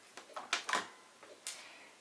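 A few sharp clicks and taps of small craft tools being handled on a wooden tabletop: a paint pen put down and a small metal scraping tool picked up.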